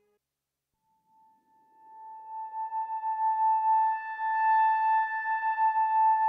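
Behringer DeepMind 6 analogue polyphonic synthesiser playing an ambient pad: after about a second of near silence, a single high held note swells in slowly, with higher overtones and a soft noisy wash building around it. A second, lower note joins near the end.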